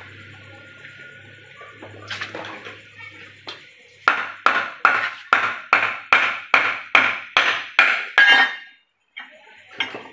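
Hammer tapping on metal parts of an automatic transmission being dismantled: about a dozen evenly spaced, ringing strikes, two or three a second, starting about four seconds in after a faint low hum.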